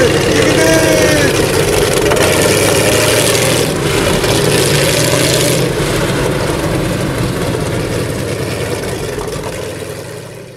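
Snowmobile engine running steadily, slowly fading out over the last few seconds.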